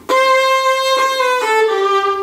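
A violin played on its own: a held, bowed note, then a step down to a lower note about a second and a half in.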